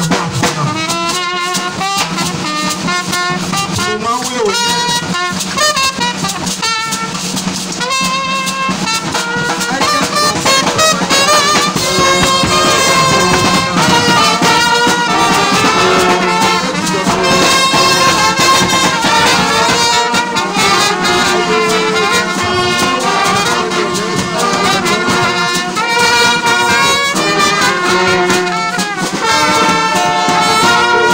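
A brass band playing a tune together: trumpets on the melody with a trombone and lower brass beneath, in steady held notes. It swells louder about twelve seconds in.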